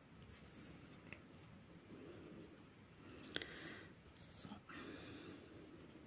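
Faint handling sounds of a yarn needle and yarn being drawn through knitted fabric: soft rustling and scraping, with a small tick a little past three seconds in.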